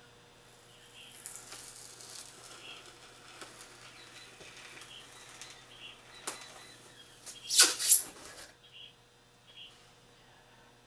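A hot, rigid copper ground wire working down through stacked foam boards: faint crackling and hissing with small ticks. About seven and a half seconds in come two loud, brief rasps.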